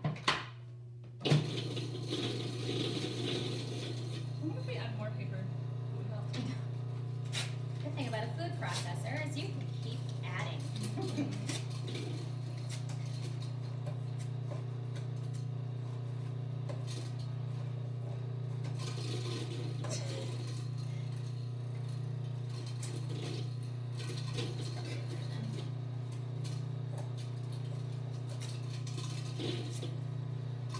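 Food processor switched on about a second in and running steadily, its blades chopping paper scraps and water into pulp, with bits of paper clicking and rattling against the plastic bowl.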